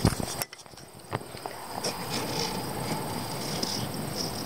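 A pencil compass being set down and scratching around on paper as it draws a circle, with a couple of light clicks in the first second followed by faint steady scratching. A steady high-pitched insect trill runs underneath.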